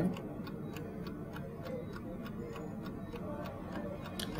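Mechanical two-dial chess clock ticking steadily, about five ticks a second.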